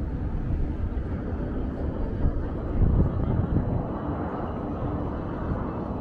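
Outdoor ambience high above the city: a steady low rumble with no clear single source, swelling briefly about three seconds in.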